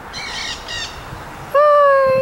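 Nanday parakeets calling: two short, high, raspy chattering calls in the first second, then a louder, drawn-out, clear call from about one and a half seconds in.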